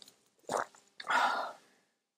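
A woman downing a shot of liquor: a brief gulp about half a second in, then a hard, breathy exhale lasting about half a second as the liquor burns.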